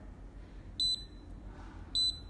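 Two short, high electronic beeps from a Fipilock FL-P4 fingerprint padlock, about a second apart, as a finger pressed on its panel is read during administrator fingerprint setup.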